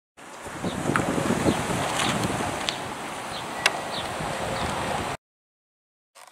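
Wind blowing across the microphone: a steady rushing noise with a few faint high chirps and sharp clicks, cutting in shortly after the start and cutting off abruptly about a second before the end.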